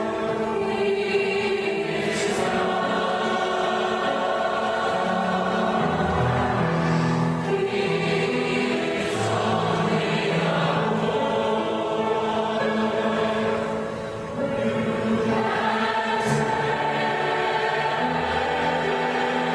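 Mixed choir of male and female voices singing sustained chords under a conductor, with a brief break in the sound about three-quarters of the way through.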